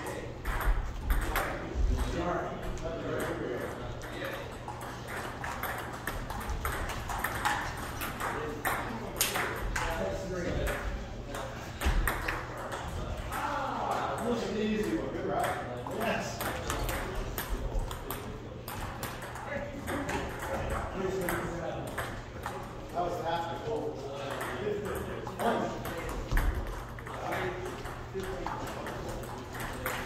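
Table tennis balls being struck by paddles and bouncing on the table during rallies: a run of short, sharp, light clicks at an irregular pace.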